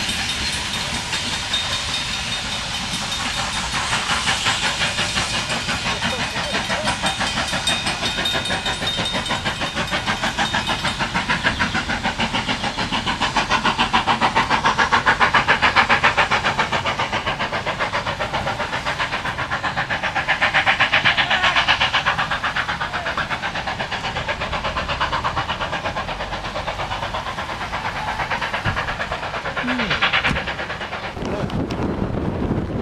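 NZR Ja-class steam locomotive Ja1271 hauling a passenger train: a fast, even rhythm of running noise with steam hiss over it, swelling louder twice around the middle.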